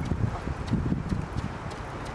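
Hoofbeats of a four-horse carriage team trotting on a sand arena: a quick, uneven patter of dull thuds.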